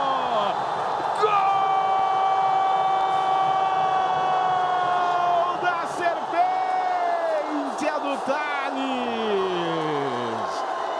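A commentator's long drawn-out goal shout, one held note for about four seconds, then shorter falling calls, over a cheering crowd.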